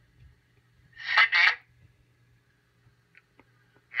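PenFriend 2 talking label reader playing back a recorded voice label through its small built-in speaker: a short spoken "CD" about a second in, over a faint steady hum.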